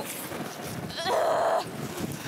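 A young woman's strained, wavering groan about a second in, held for about half a second, as she strains against a hooked fish on the rod; wind noise on the microphone underneath.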